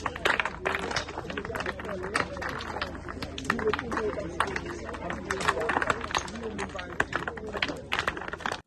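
Several people talking over one another outdoors, with frequent sharp clicks and knocks and a steady low hum underneath; the sound of a stone gabion canal construction site.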